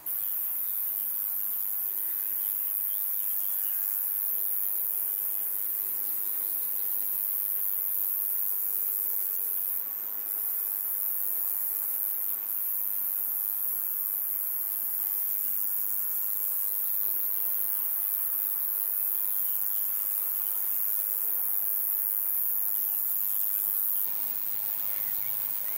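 A steady, very high-pitched shrill of crickets stridulating in a summer meadow. Faint wavering buzzes from passing bees and other flying insects come and go beneath it.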